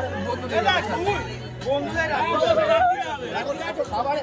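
Several people talking at once close by, overlapping chatter, with music faintly underneath.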